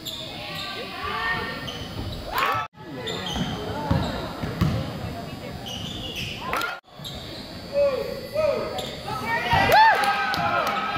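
Live game sound of basketball in a school gym: the ball bouncing on the wood floor and the calls of players and spectators, in a hall ambience. The sound cuts out abruptly twice, and the calls are loudest near the end.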